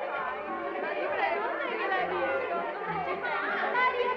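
A group of women chattering all at once, many overlapping voices with no single speaker standing out, over low dance music from the ballroom.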